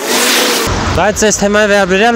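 A man speaking Armenian into a handheld microphone. His speech begins about half a second in, just after a brief hiss of street traffic on a wet road.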